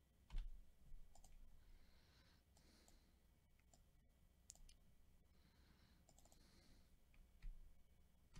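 Faint, scattered clicks of a computer mouse and keyboard, a handful of separate clicks spread irregularly over the seconds, against near silence.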